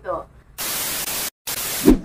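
Burst of TV-style white-noise static, an even hiss about a second and a half long, broken by a short drop to dead silence partway through. It is an edited-in transition sound effect at a cut to a new clip.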